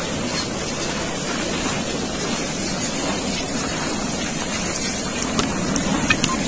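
Steady rushing noise beside an advancing lava flow, mixed with wind on the microphone, and a few sharp cracks near the end.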